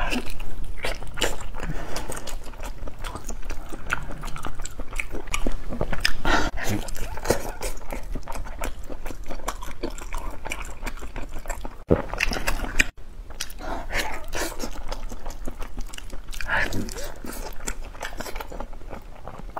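Close-miked eating sounds of a person biting and chewing braised pig trotter skin: a steady run of short smacks and clicks from the mouth.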